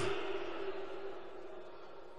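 A pause between shouted phrases of an amplified voice: the echo of the last word dies away in a large hall, leaving faint room noise and a faint steady tone that fades out about a second in.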